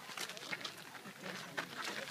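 Faint voices with scattered clicks and scuffs throughout.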